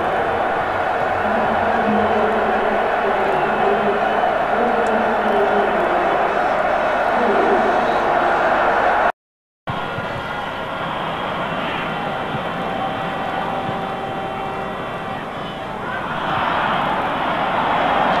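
Steady murmur and din of a large football stadium crowd, broken by a sudden half-second cut to silence about nine seconds in, and swelling slightly near the end.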